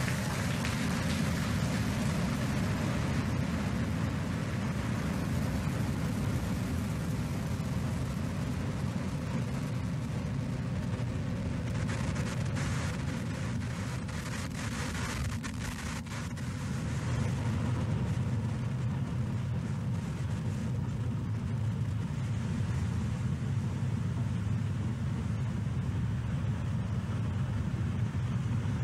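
Falcon 9 first stage's nine Merlin engines during ascent, heard from the ground as a steady low rumble with some crackle. The rumble dips briefly about halfway through, then swells again.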